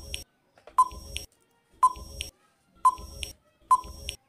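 Countdown-timer sound effect: four short electronic beeps about a second apart.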